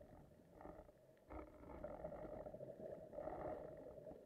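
Faint, muffled underwater noise through a camera housing, with a low rumble that swells into a rushing sound about a second in, and again for a moment near the end.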